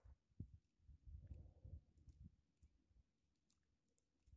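Near silence, broken by faint low knocks and small clicks from handling an ultralight spinning rod and reel during a lure retrieve.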